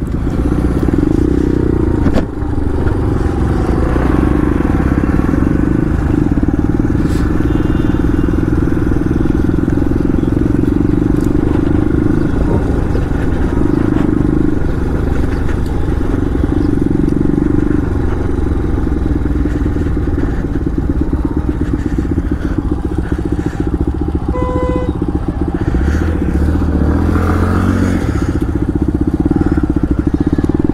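Bajaj Pulsar 125's single-cylinder engine running steadily at low speed as the bike rolls slowly, heard from the rider's helmet. A short high beep sounds once, about three-quarters of the way through.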